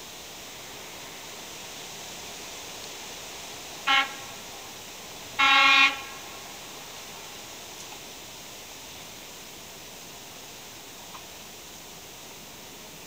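Horn of a diesel passenger railcar sounding two blasts: a short toot about four seconds in, then a longer blast about a second and a half later. Under it is a steady outdoor hiss.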